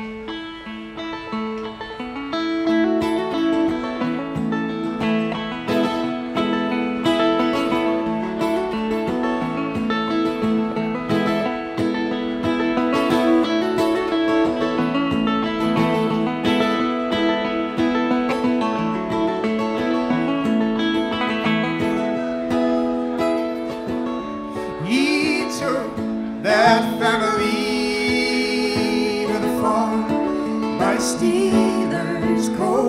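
Live folk band playing the introduction of a song on acoustic guitar, banjo and accordion, with singing coming in near the end.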